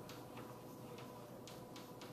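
Chalk writing on a blackboard: a few faint taps and short scratches as letters are written, over a faint steady hum.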